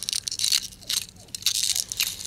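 Shattered glass envelope of a 5Y3 rectifier tube crunching and crackling as it is worked by hand around the tube's base, a dense run of small sharp clicks with louder clusters about half a second in and near the end.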